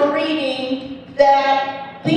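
A woman's voice speaking into a microphone, with slow, drawn-out syllables in two long stretches broken by a short pause about a second in.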